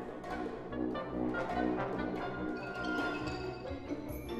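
Symphony orchestra playing, with strings and winds sounding short repeated chords about two or three a second. A held higher note enters in the second half.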